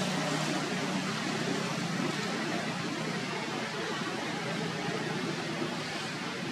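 Steady background hiss with a faint low hum beneath it that is strongest in the first second or so; no distinct events stand out.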